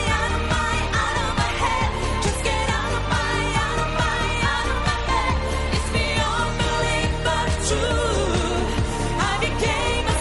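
Up-tempo pop song from a live stage performance: a female lead singer over a steady dance beat.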